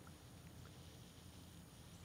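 Near silence: a faint, even background hiss.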